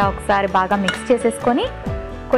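A woman speaking over steady background music.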